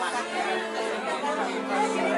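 Many voices at once: grieving relatives crying and talking over one another, with a faint steady tone underneath.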